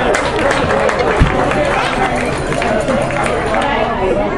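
Indistinct voices of people talking around a tennis court, with scattered sharp clicks and one thump about a second in.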